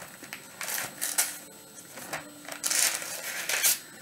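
Thin Bible pages being turned, several short papery swishes while a passage is looked up.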